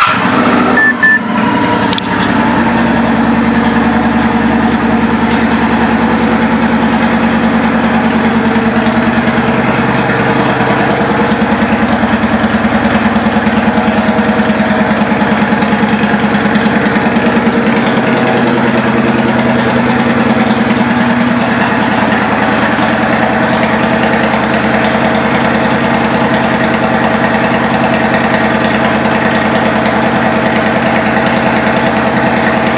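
2006 Kawasaki Vulcan 900 Classic's V-twin engine, through aftermarket Cobra exhaust pipes, just fired up: it settles within the first couple of seconds into a steady, loud idle.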